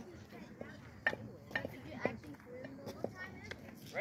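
Faint chatter of voices at a youth baseball field, with a few short sharp knocks about one and two seconds in.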